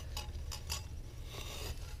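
A few faint, short scrapes and clicks over a steady low rumble.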